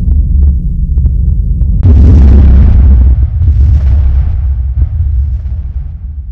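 Diamond Films logo ident sound design: a deep, loud low drone, then a sudden heavy boom with a hissing crash about two seconds in and a second surge a second and a half later, dying away near the end.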